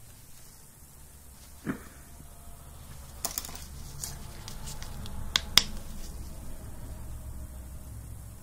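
A few sharp light clicks and taps of small objects being handled, the loudest about five and a half seconds in, over a low steady hum.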